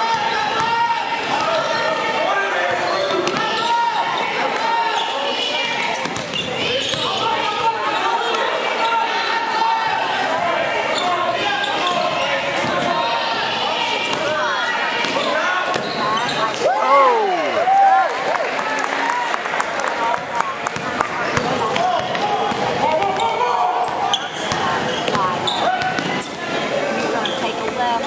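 A basketball being dribbled and bouncing on a hardwood gym floor during play, under the continuous voices of spectators and players calling out, all echoing in a large gymnasium. A loud call with a pitch that rises and falls stands out about 17 seconds in.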